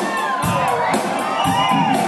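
Concert audience cheering and whooping, many rising and falling voices, over a live rock band's amplified music, which thins out briefly at the start and picks back up about half a second in.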